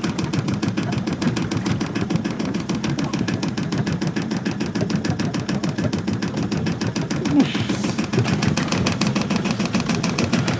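A boat engine running steadily, giving a rapid, even chugging of about ten beats a second, with a brief louder noise about seven and a half seconds in.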